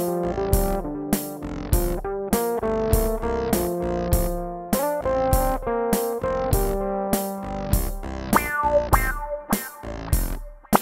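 Electric bass groove, played live and layered with a looper over a steady drum-machine beat. The bass runs through octave-up, synth-wah, envelope-filter and delay pedals. Near the end the layered notes thin out to sparser, shorter plucked notes over the beat.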